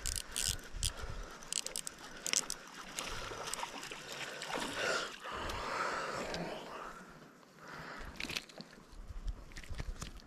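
Short clicks and rattles from a baitcasting reel as it is handled and cranked. A few seconds in comes a stretch of water splashing near the bank as the line is reeled in.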